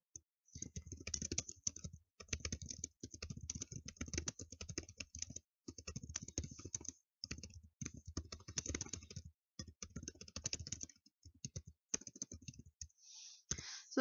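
Typing on a computer keyboard: runs of rapid keystrokes broken by short pauses.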